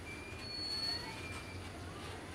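Loaded BTPN tank wagons of a freight train rolling past, wheels rumbling on the rails, with thin high-pitched wheel squeals that come and go.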